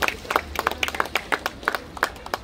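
A small group of people clapping: scattered, uneven claps.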